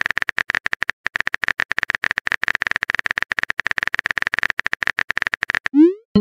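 Texting-app typing sound effect: a fast, even run of clicks with a short break about a second in, ending in a quick rising swoosh as a message is sent.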